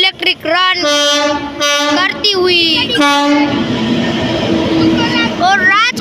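Electric-locomotive-hauled passenger train approaching and passing close by, with wheel rumble from about three and a half seconds in. Loud, wavering pitched calls sound over it in the first half and again near the end.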